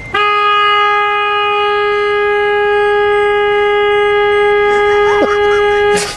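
A car horn held down in one long, steady, single-pitched blast.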